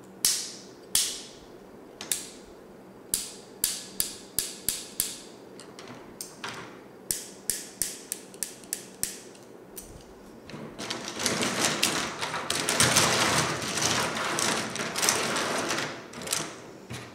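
Plastic gel pens being handled: a string of sharp plastic clicks as a pen is worked in the fingers. From about two-thirds of the way in comes a dense, continuous clatter of many pens being stirred and rolled against each other on the tabletop.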